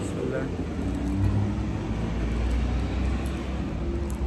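Steady low rumble of street traffic, a motor vehicle running close by.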